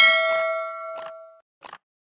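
Notification-bell chime sound effect, a single ding that rings and fades out over about a second and a half, followed by two short clicks.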